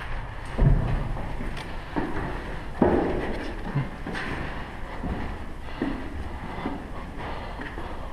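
Footsteps and knocks of someone climbing a steep wooden ladder: irregular thuds every second or so, the loudest early on, with handling rustle over a steady low rumble.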